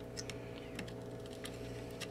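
Faint scattered clicks and taps of circuit boards being handled as an LCD plate is pressed onto a Raspberry Pi's GPIO header, over a steady low hum.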